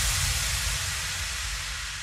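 Electronic white-noise sweep fading out as an electro-pop track ends, with a low bass rumble under it.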